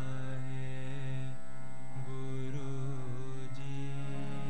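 Sikh devotional kirtan: a man's voice singing a chant into a microphone over held, steady musical notes, the melody shifting to new notes a few times.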